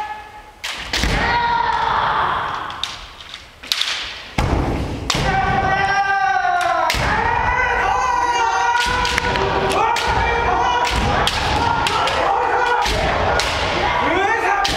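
Kendo sparring: long drawn-out kiai shouts from the fighters, nearly continuous from about four seconds in, over sharp cracks of bamboo shinai striking and thuds of stamping feet on the wooden floor, ringing in a large hall. It is quieter for a couple of seconds early on, then the shouting and strikes come thick and fast.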